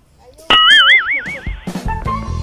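An edited-in sound effect: a sudden wobbling, warbling tone about half a second in, lasting about a second, followed near the end by background music starting.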